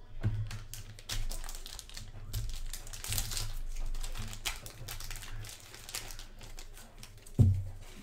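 Plastic wrapping crinkling and rustling while hard plastic card slabs are handled, with many small clicks, and a low thump near the end.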